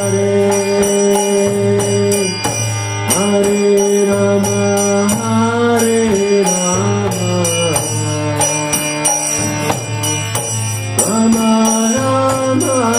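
Devotional chanting: a man sings long, sliding held notes to his own harmonium, its reeds sounding chords and a steady low drone under the voice. Small hand cymbals keep an even metallic beat throughout.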